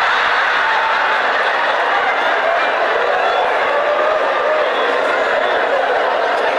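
Large audience laughing, a steady wash of many voices that holds at one level throughout.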